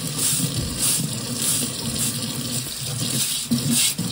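Kitchen tap running into a stainless steel sink while a stiff nylon scrub brush is worked over an oyster shell under the stream, its strokes giving repeated short scratchy sounds.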